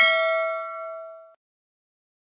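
Notification-bell 'ding' sound effect from a subscribe-button animation: a single struck chime of a few clear tones that rings and fades away, gone about a second and a half in.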